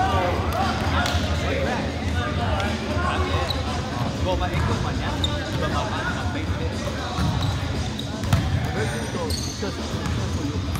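Overlapping voices of volleyball players talking and calling across a large indoor gym, with a few sharp knocks of the volleyball bouncing on the hardwood floor and being struck.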